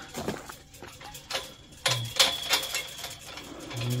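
Irregular light clicks and rustling from a hand-held phone and clothing as the person carrying it moves.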